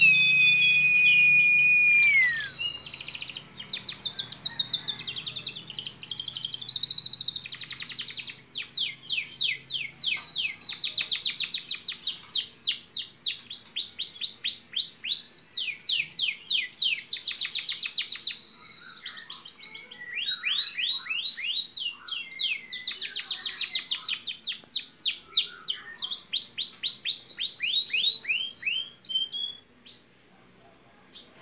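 Canary singing a long song: a held whistle at the start that glides down, then long runs of very fast rolling trills of repeated high notes with short breaks between them.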